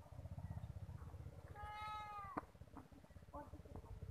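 A single drawn-out, slightly falling high-pitched animal call, cat-like, about halfway through, followed by a sharp click. A low rumbling noise runs underneath.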